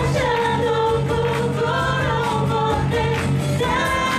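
A woman sings a Japanese Christian worship song into a microphone, holding long, gliding notes, backed by a live band of electric guitar, keyboard and drums.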